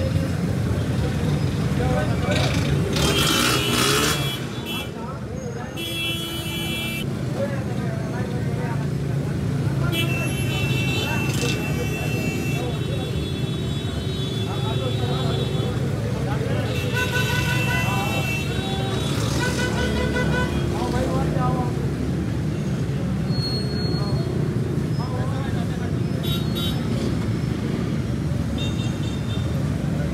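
Busy street ambience: a steady traffic rumble with vehicle horns tooting several times, and voices in the background.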